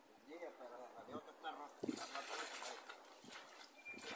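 River water sloshing and splashing as a cast net is gathered and swung by someone wading waist-deep, ending in a splash as the net lands on the water. Faint talk in the first second or two.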